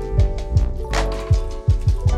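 Background music with a steady drum beat: bass drum thumps, quick hi-hat ticks and held chords.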